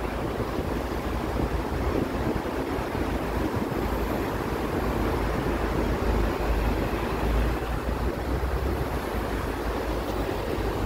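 Steady road traffic noise from cars, vans, a truck and minibuses passing on a city street, with wind buffeting the phone microphone as an uneven low rumble.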